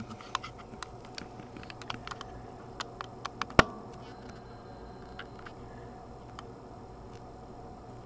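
A string of light clicks and taps from hands on bench equipment, the sharpest knock about three and a half seconds in. After that only a faint, steady low hum remains.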